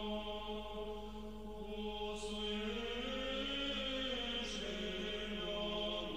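Orthodox church chant as background music: voices hold a steady low drone while a melody line rises and falls slowly above it.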